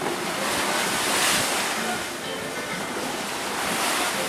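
Rough sea rushing and splashing against the side of a boat's hull, with wind buffeting the microphone. The wash swells louder about a second in and again near the end as a wave breaks into spray against the side.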